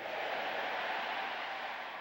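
A steady hiss of noise with no tone or rhythm in it, filling the gap between spoken phrases.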